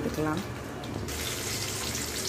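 Dried red chillies, garlic cloves and mustard seeds sizzling in hot oil in an aluminium kadai, a steady frying hiss that turns brighter about a second in.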